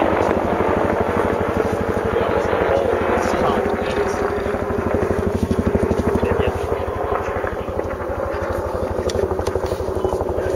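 A steady engine sound with a fast, even low pulse, under a haze of wind-like noise.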